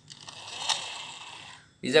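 Plastic toy sports car pushed by hand along a tile floor, its wheels and gears giving a steady ratcheting whir, with one sharp click about 0.7 seconds in; the whir fades out shortly before a voice starts at the end.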